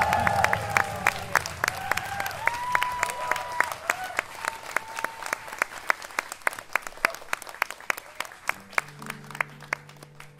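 Concert audience applauding as the song's last notes die away, the claps thinning out and growing quieter. Near the end a steady keyboard chord comes in, the start of the next song.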